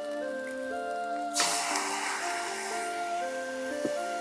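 Background music plays throughout; about a second and a half in, light soy sauce poured into the hot wok of fried rice hits the metal and sizzles loudly, then slowly dies down.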